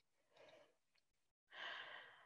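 Near silence with a faint breath into a close earphone microphone, about half a second long, near the end.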